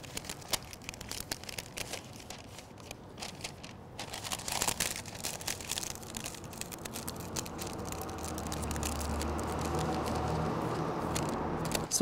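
Parchment paper crinkling and crackling as it is folded over and pressed into hard creases with the fingers against a wooden cutting board, in many short irregular crackles. A low steady hum comes up in the background during the second half.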